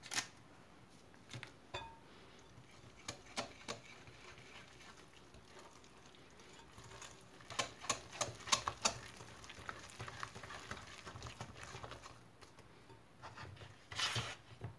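Wire whisk stirring a thick yogurt batter in a glass bowl, mostly faint. There are a few scattered light clicks, then a quick run of louder clicks about halfway through as the whisk works against the glass.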